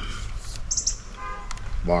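A bird chirps once, a quick high call under a second in, over a low steady outdoor hum; a short brief tone follows about halfway through.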